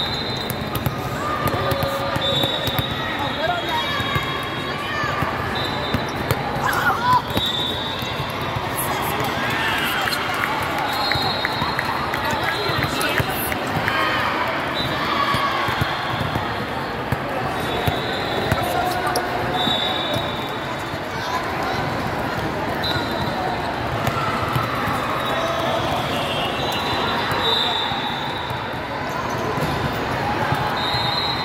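Busy indoor sports hall with several volleyball courts: many voices talking and calling at once, with scattered volleyball hits and repeated short high-pitched sneaker squeaks on the court floors.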